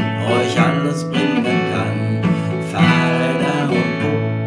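Acoustic guitar with a capo on the second fret, strumming chords in a steady rhythm as song accompaniment.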